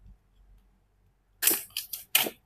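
Plastic shrink-wrap on a paperback book crackling as it is torn and pulled off by hand, in loud, quick bursts starting about one and a half seconds in after a near-quiet start.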